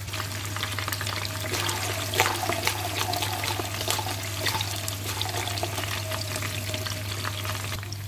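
Fish cake (chả cá) shallow-frying in hot oil in a pan: steady sizzling with dense, continuous crackling pops.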